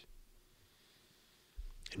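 Near silence in a short pause in a man's speech at a close microphone, with faint mouth clicks and a breath near the end as he gets ready to speak again.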